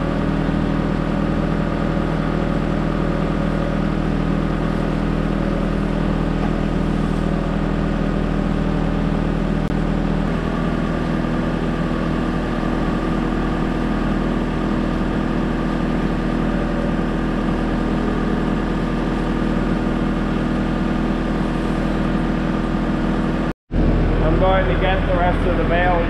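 Skid-steer loader engine running steadily, its note shifting a little about ten seconds in. The sound breaks off briefly just before the end.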